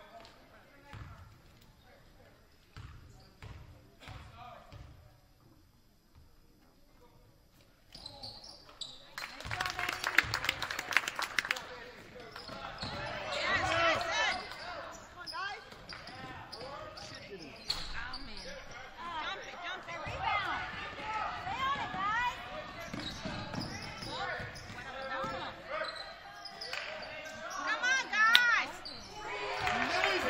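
Basketball bouncing on a hardwood gym floor at a free throw, a few separate bounces. About eight seconds in, live play begins: sneakers squeaking on the court, the ball bouncing, and players and spectators shouting.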